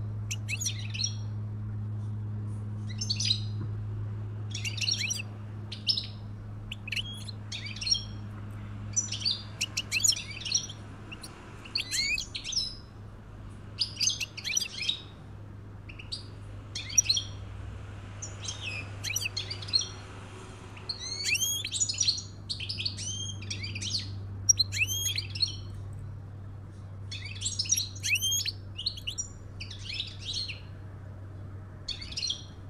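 European goldfinches twittering: short bursts of high, quick chirps every second or so, over a steady low hum.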